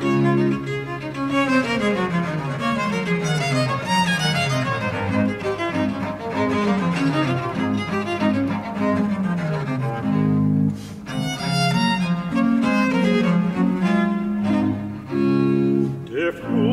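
Baroque chamber ensemble of violin, viola da gamba and chamber organ playing an instrumental passage without voice, with repeated rapid descending scale runs in the low register.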